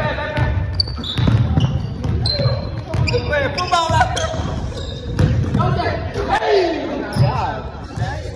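Basketball bouncing on a hardwood gym floor during a pickup game, with players' voices and shouts echoing through the large gym.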